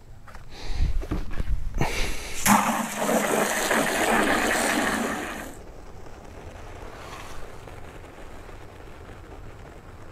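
Garden-hose spray nozzle running water into a plastic five-gallon bucket of car-wash soap, a loud rush of water starting about two seconds in and easing to a quieter flow after about five and a half seconds.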